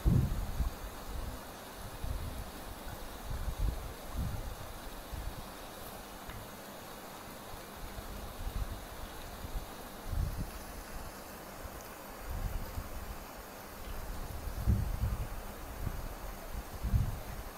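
Steady faint hiss with irregular soft low thuds as hands and a fine-tip pen work on a paper drawing tile on a table, the tile being turned while ink circles are drawn.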